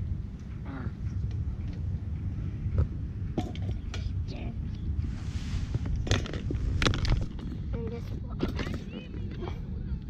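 Beach ambience: a steady low rumble with faint voices, scattered light clicks and knocks, and a short hiss about halfway through.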